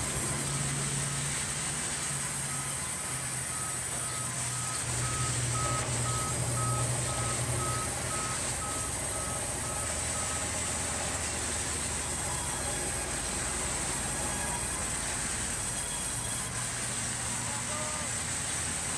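Large sawmill band resaw running steadily with a constant high hiss and low motor hum as boards are fed through it. An electronic beep repeats about twice a second for several seconds in the first half.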